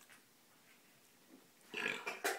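Near silence: room tone, broken near the end by a short, breathy, noisy sound.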